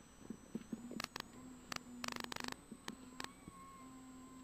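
Low-level in-car sound of a Volkswagen R32 rally car taking a long corner: a faint steady engine note under clusters of sharp clicks and rattles.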